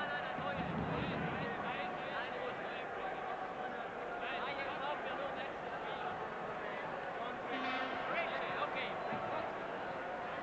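Ice hockey arena crowd chattering during a pause in play, a steady din of many overlapping voices.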